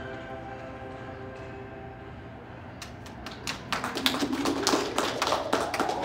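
The held closing notes of a recorded backing track fade out. About three seconds in, scattered clapping from a small audience starts and quickly thickens.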